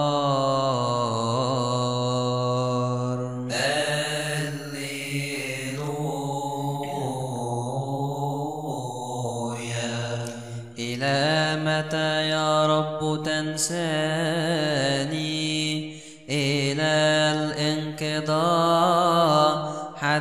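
A man's voice chanting a long wordless melisma in Arabic psalm chant, held notes that waver and glide in pitch, with brief breaks for breath about ten seconds in and again about sixteen seconds in.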